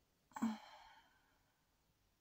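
A woman's single short sigh, starting about a third of a second in: a brief voiced onset that trails off into a breathy exhale lasting under a second.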